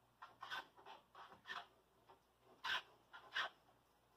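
The sharp edge of a pair of shears drawn along a drywall square, scoring a cut line on a corrugated clear plastic roofing sheet. It makes a series of short, faint scratching strokes, the two loudest near the end.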